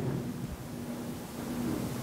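Quiet room tone: a faint steady hum under a low even hiss, with the echo of a spoken word dying away at the start.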